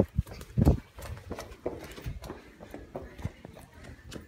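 Irregular thumps and knocks of hurried footsteps and a phone jostled in the hand, loudest twice in the first second and then lighter clicks.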